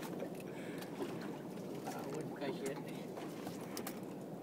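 Faint, indistinct voices over steady low background noise aboard a small open boat.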